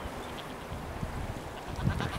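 Background of a nesting albatross and penguin colony: scattered, fairly faint calls over a steady outdoor hiss.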